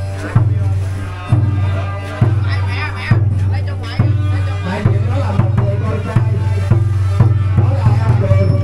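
Vietnamese funeral music: a deep drum struck about once a second, each stroke booming on, quickening to about two strokes a second halfway through, with a wavering higher melody above.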